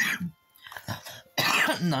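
A woman coughing: a short cough at the start, then a louder coughing bout about a second and a half in, from a tickle in her throat.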